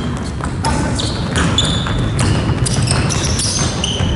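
Basketball game sounds on a wooden gym floor: many short, high sneaker squeaks and running footsteps, with the ball bouncing.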